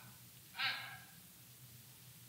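A short, audible breath from a person about half a second in, over a faint low hum.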